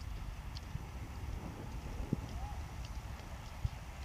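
Low rumble of wind and handling on a phone microphone, with soft, irregular footsteps on sand.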